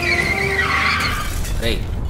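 Tyres screeching in a hard skid over a low vehicle rumble, a dramatic braking sound effect. The screech wavers and fades out after about a second and a half.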